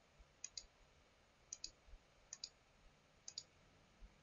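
Faint computer mouse clicks: four quick double clicks, press and release, about a second apart, on a slider setting the slideshow speed.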